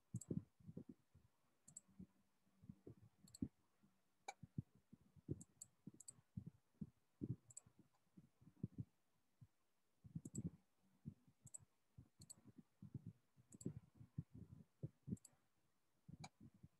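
Faint computer keyboard and mouse clicks: irregular soft keystrokes, several a second, with a few sharper clicks mixed in.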